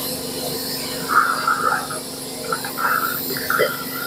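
Portable dental unit's suction running with a steady hum, with short squeaks coming and going from about a second in.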